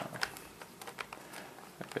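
3x3 Rubik's cube being twisted in the hands: a few faint, scattered plastic clicks as its layers turn.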